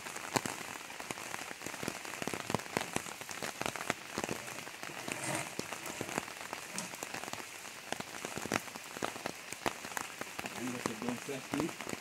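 Steady rain, a dense patter of drops falling on corrugated roof sheets and wet ground.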